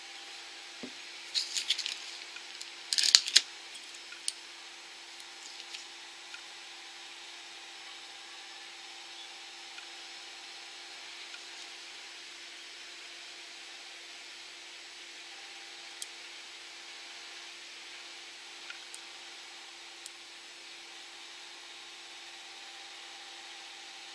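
Nail-stamping scraper dragged twice across a metal stamping plate, two short rasping scrapes a couple of seconds in. After that, only a faint steady hum with a few tiny clicks.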